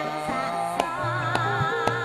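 Javanese gamelan music: layered sustained metallophone tones with drum strokes falling about every half second, a female singer's wavering line trailing off at the start, and low held gong-like tones entering about a second in.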